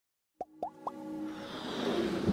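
Intro sting of synthesized sound effects: three quick rising plops about a quarter second apart, then a swelling musical build-up.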